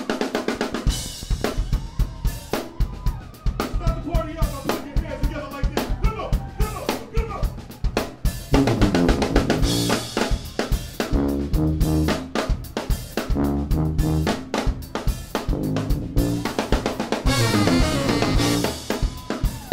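Live brass band starting a number. A drum kit (kick, snare and cymbals) plays a steady groove from the first moment, and about eight and a half seconds in the brass come in over it with a low bass line and trombones.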